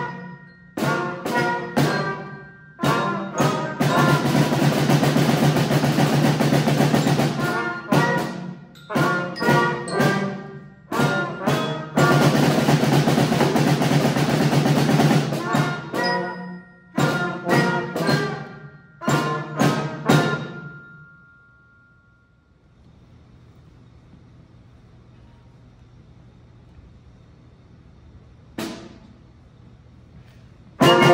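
Youth concert band of flutes, trumpets, baritone horns and drums playing short, sharply cut-off chords between longer held chords. The playing stops about 21 seconds in and leaves only quiet room noise, with one brief sound near the end.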